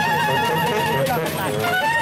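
Brass band (fanfară) playing a traditional tune: a wind instrument holds a fast trilled note for about the first second, then the melody moves on.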